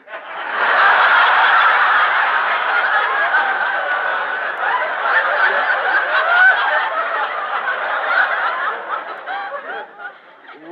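A studio audience laughing hard and long, a big wave of many voices that swells within the first second and tails off near the end. Heard through the narrow, top-cut sound of a 1940s radio broadcast recording.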